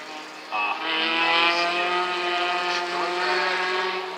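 Autocross race car engine running at a fairly steady pitch as the car drives on the dirt track, cutting in sharply about half a second in.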